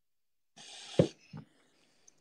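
A short hissing breath close to the microphone, then a sharp knock about a second in and a fainter knock just after.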